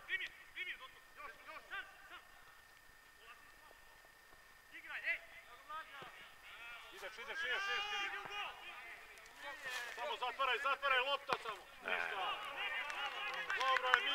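Footballers' distant shouts and calls to each other across the pitch, coming in bursts, sparse at first and busiest in the second half. A few sharp knocks of the ball being kicked come through.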